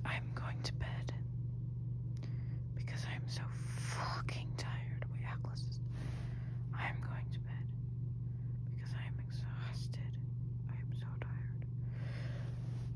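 Whispered speech in short breathy phrases, over a steady low hum.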